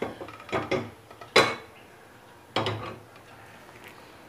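A few light clinks and knocks of kitchen utensils against an aluminium pressure cooker and containers. The sharpest clink comes about a second and a half in and another knock about a second later, with quiet between them.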